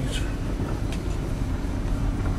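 Vehicle cabin noise while driving slowly: a steady low engine and road rumble with a faint steady hum over it.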